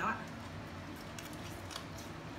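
A woman's words end right at the start, then a few faint light clicks and crunches from eating papaya salad with a fork, over low room noise.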